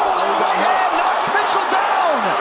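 Arena crowd cheering in reaction to a big uppercut, with a man's brief exclamation at the start and a few sharp slaps or thuds of strikes landing partway through.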